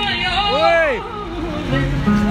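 A man's voice through the stage PA ends a held sung note with a rising-and-falling glide about halfway through. Talk and crowd chatter follow over a steady low drone.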